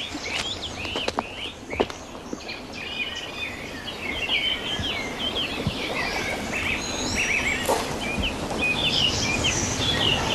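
Small songbirds chirping and twittering in many short, overlapping calls over a steady outdoor background hiss, with a few brief clicks in the first two seconds.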